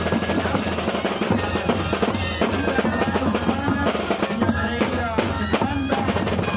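A moseñada band playing: side-blown moseño cane flutes carry a held melody over steady beating of snare-type drums and bass drums.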